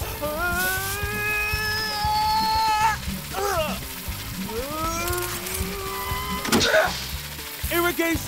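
Wordless cartoon character voice: one long held cry that rises slightly, then shorter sliding calls, with a sharp click a little past halfway, over background music.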